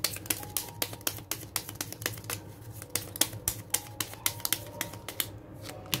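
A deck of cards being shuffled by hand: an uneven run of crisp clicks, several a second, as the cards slap together.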